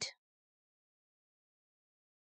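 Near silence: a narrator's last word fades out in the first instant, then nothing at all.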